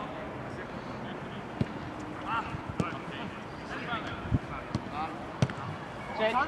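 Soccer ball being kicked during play: about five short thuds spread over a few seconds, with faint distant shouts from players.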